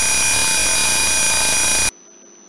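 The simulated piezo buzzer of an Arduino burglar alarm in Tinkercad Circuits sounds one loud, steady tone: the alarm going off because the PIR sensor has detected motion. It cuts off suddenly near the end.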